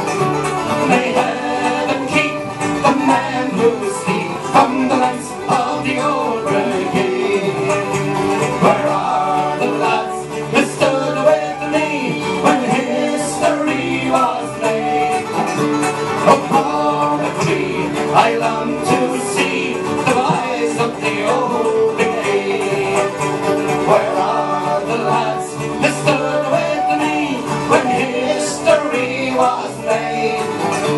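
Live Irish folk band playing an instrumental break in a ballad: strummed acoustic guitars, a banjo, bass guitar and a flute carrying the melody, at an even, steady volume.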